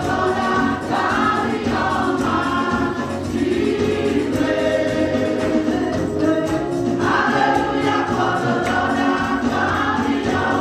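A women's gospel choir singing together in harmony through microphones and a PA, over a steady beat.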